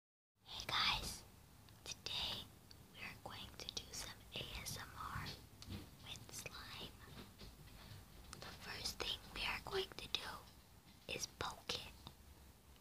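A person whispering close to the microphone in short breathy phrases, with a few small clicks between them.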